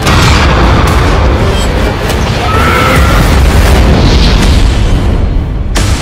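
Cinematic trailer sound design: a sudden loud boom opens a dense wash of deep noise and music that stays loud throughout. Another sharp hit comes near the end.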